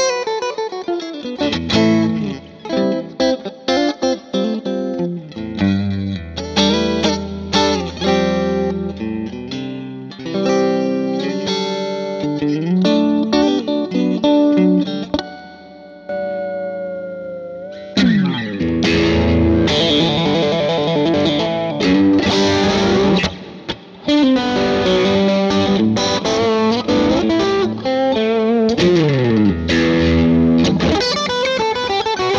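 Electric guitar, a 1955 Fender Stratocaster, played through a Marshall 2525C Mini Jubilee 20-watt tube combo amp. It plays a single-note lead line with string bends and a held, bending note around the middle, then breaks into louder, denser and brighter playing for the second half.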